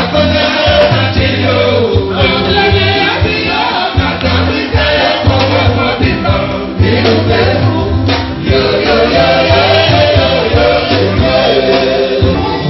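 Loud live Congolese rumba: several voices singing together over a band with a steady pulsing bass line.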